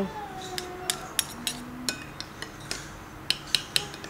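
Metal spoons clinking against a glass bowl as thick, sieved rice porridge is stirred and scooped: a series of light, irregular clinks, coming closer together near the end.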